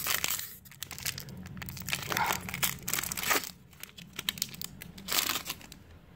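Foil wrapper of a Pokémon trading-card booster pack crinkling and tearing as it is opened and handled by hand, with the paper insert inside being unfolded. The crinkling comes in three louder bursts: at the start, from about two to three and a half seconds in, and about five seconds in.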